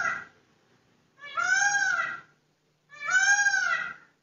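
A cat meowing repeatedly: one call trails off just after the start, then two long meows of about a second each follow, each rising and then falling in pitch.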